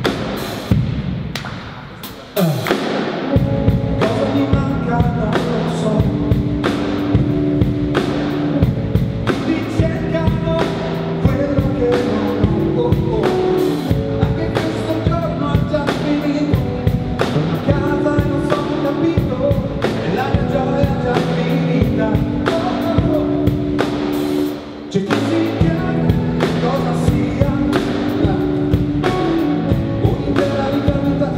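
Live band playing a pop song on acoustic guitar, drum kit and keyboard, with a steady drum beat. A falling sweep in the opening seconds cuts off suddenly before the full band comes in, and the music briefly drops out about 25 seconds in.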